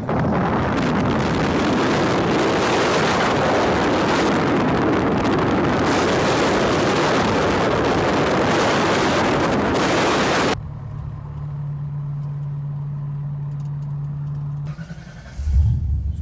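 A car on the move, heard with the microphone held out of the window: a loud rushing of wind and engine for about ten seconds, which then cuts off abruptly to a steady low engine hum.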